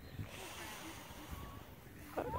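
Quiet open-air background with faint distant voices and a low, uneven rumble on the microphone.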